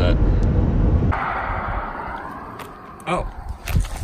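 Low road and engine rumble inside a moving car's cabin, which cuts off abruptly about a second in. A fainter rushing hiss follows and fades away.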